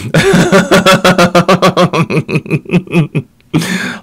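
A woman laughing: a long run of quick, pulsing laughs, about seven a second, that dies away about three seconds in, followed by a short pause and a breath.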